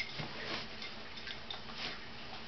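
A few sharp, irregular clicks, the sharpest right at the start and another about a second and a half in, typical of a handheld dog-training clicker marking the dog's behaviour.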